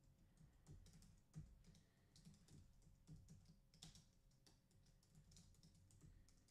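Faint typing on a computer keyboard: an irregular run of soft key clicks as a line of code is entered.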